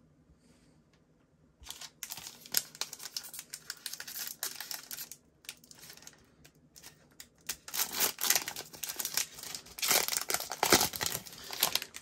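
The cellophane wrapper of a trading-card cello pack crinkling and tearing as it is pulled open by hand. It starts about a second and a half in, eases off briefly around the middle, and comes back louder near the end.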